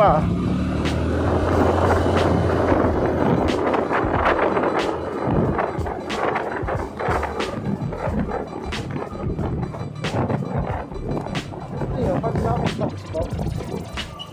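Motorcycle under way: wind buffeting on the microphone over a low engine hum, with background music mixed in.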